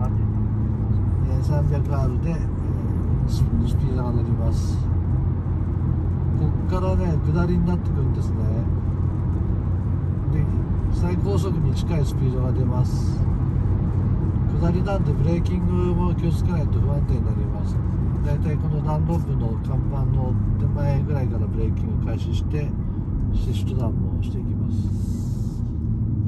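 A car's engine running steadily under way, heard from inside the cabin, with tyre and road noise from the wet track.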